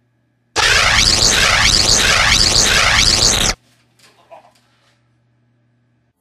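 Electric-shock zap sound effect: a loud, harsh burst starting about half a second in with a sweeping pattern that repeats, lasting about three seconds and cutting off suddenly, followed by a few faint small noises.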